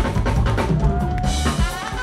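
Live funk band playing, with the drum kit to the fore: bass drum and snare hits over electric bass, and a held note sounding through the middle.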